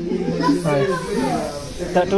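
Several voices talking and chattering over one another in a room.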